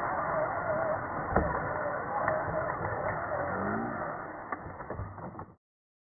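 Electric motor of a radio-controlled scale crawler truck whining with wavering pitch as it climbs a dirt mound, with a sharp knock about a second and a half in. The sound cuts off abruptly near the end.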